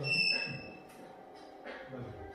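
A single electronic beep: one steady high tone lasting just under a second.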